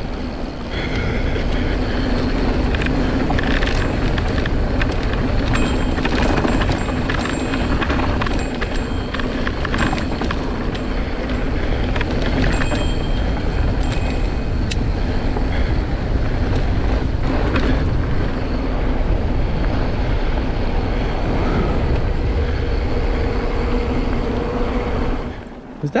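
Mountain bike riding fast down a dirt trail: wind on the camera microphone and tyres on dirt, with many small rattles and knocks over bumps and a steady buzzing tone. The noise dies away just before the end.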